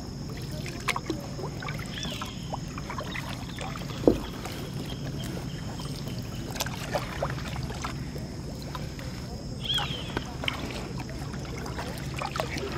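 Kayak paddling on calm water: the paddle blades dip and pull through the water with splashes and drips, alternating side to side, with scattered light clicks and one sharp knock about four seconds in.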